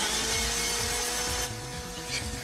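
A motorised spinning-blade hair-cutting machine whirring: a steady hum under a grinding, saw-like hiss, which thins out about one and a half seconds in.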